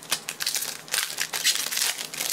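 Foil wrapper of a trading card pack crinkling in the hands as it is torn open: a dense, irregular run of crackles.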